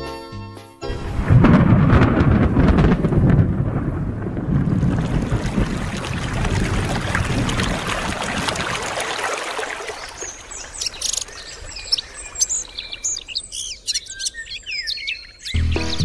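Storm sound effect: a rumble of thunder about a second in, with a rain-like hiss that thins out, giving way to birds chirping for the last several seconds. Brief music at the very start and again just before the end.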